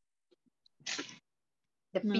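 One short, sharp burst of breath from a person, about a second in, heard over a video call's audio.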